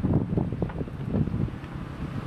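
Engine of a two-wheel hand tractor running with a fast, even, low beat, hitched to a tilling implement in a wet field.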